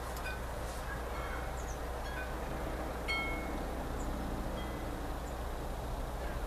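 Wind chimes ringing now and then: scattered short, clear pings at several different pitches, over a steady low hum and hiss.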